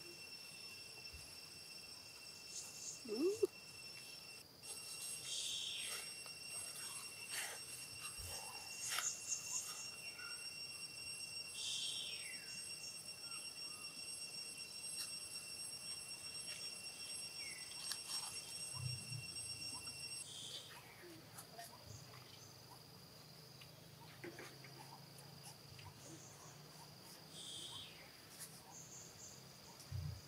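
Insects shrilling in several steady high tones that stop about two-thirds of the way through, over dry leaves crackling and rustling as a baby monkey moves across them. A short rising call a few seconds in is the loudest sound.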